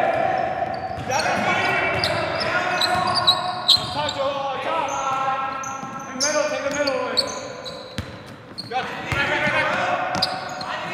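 Pickup basketball in a gym: sneakers squeak on the hardwood floor in short high chirps and a basketball bounces, with players' voices ringing in the hall.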